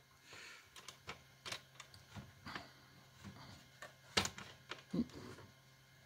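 A quarter-inch steel bolt with a wing nut being worked by hand through plywood into a T-nut: faint, scattered clicks and scrapes, with a sharper knock about four seconds in and another about a second later, as the bolt searches for the threads before they catch.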